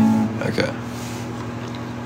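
Acoustic guitar strung without its high E string: a strummed chord rings out and fades, leaving a steady low ringing of the strings, with a brief small sound about half a second in.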